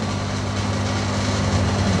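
Steady low mains hum from the aquarium shop's electric air pumps and filters, over an even hiss of air and water.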